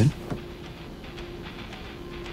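A quiet, steady hum holding one pitch, under a faint background hiss.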